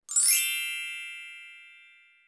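A bright chime sound effect: a quick rising sweep into a ringing, many-toned chime that fades out over about two seconds.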